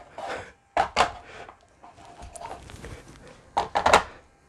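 Handling noise from a heavy statue being shifted on a small motorized turntable, by hand. There are a couple of knocks about a second in, light rubbing in the middle, and a quick cluster of knocks and scrapes near the end as its base is set and straightened.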